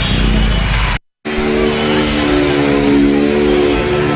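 Street noise with motorcycle engines running, cut off abruptly about a second in. After a brief silence comes music with held, chord-like notes.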